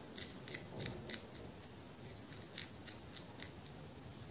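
Fingertips and long nails scratching and rubbing through short hair on the scalp: an irregular series of short, crisp crackles.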